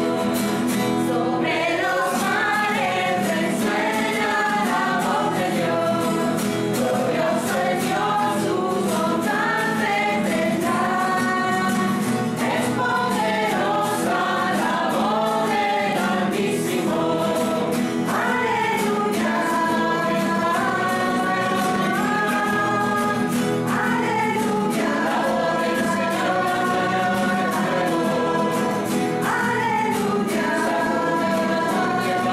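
A choir singing a hymn in several voices, the melody moving in slow, held phrases over a steady low accompaniment.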